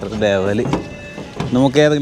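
Speech only: a person's voice calling out twice.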